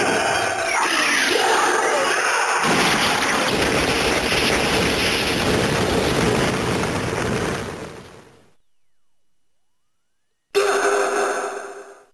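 Electronic sound effect from the Ultraman Trigger Power Type Key (Premium) toy: a long explosion-like burst follows the finisher call and fades out over about eight seconds. After a brief silence, another effect with a steady tone starts suddenly near the end and fades.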